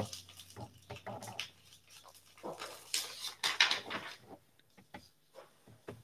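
Faint, scattered rustles and light knocks of loose paper song sheets being handled and shuffled.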